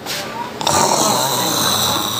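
A person making a long, raspy, hissing growl in imitation of a zombie; it starts about half a second in and runs on for about two seconds.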